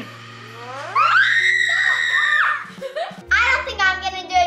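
A child's long, high-pitched scream that rises quickly and holds steady for about a second and a half before breaking off, over steady background music.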